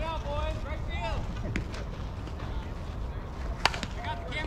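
Players' voices calling out across a softball field over a steady low rumble of wind on the microphone, then one sharp crack about three and a half seconds in, the loudest sound.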